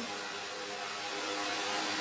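Steady road and engine noise heard from inside a moving vehicle, an even rushing hiss with a faint low hum.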